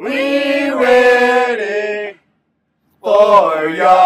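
A group of voices chanting together in two long, drawn-out phrases, with a silent gap of about a second between them.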